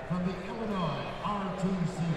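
A man's voice speaking quietly in short phrases, softer than the commentary either side.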